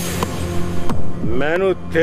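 A steady low drone of dramatic background music, with a sudden hissing swish in the first second; a voice comes in a little past halfway.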